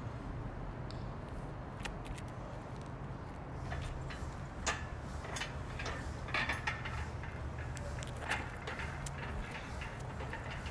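Metal clanks and knocks from a steel yoke as it is lifted and starts to be carried overhead, several in the second half, the sharpest about halfway through, over a steady low outdoor rumble.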